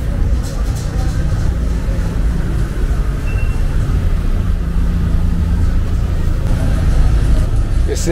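City street traffic: car engines running and passing, heard as a steady low rumble, with indistinct voices of people in the street.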